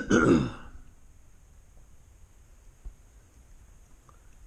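A man's short cough, clearing his throat, at the very start, followed by quiet room tone with one faint click near the three-second mark.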